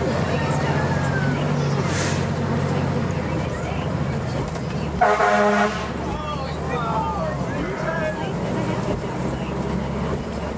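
A fire engine's diesel engine running steadily, heard from inside the cab, with one short vehicle horn toot of under a second about five seconds in.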